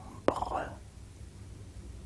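A mouth click and a short, faint breathy sound from a speaker about a quarter second in, then a low, steady background hiss.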